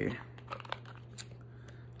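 A cardboard cosmetics box being opened by hand, with faint rustling and a few small scattered clicks of the paperboard as the inner box is worked out.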